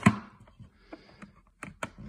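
Plastic CD jewel cases clicking against one another as they are flipped through in a stack: one sharp, loud clack at the start, then a few lighter clicks spread through the rest.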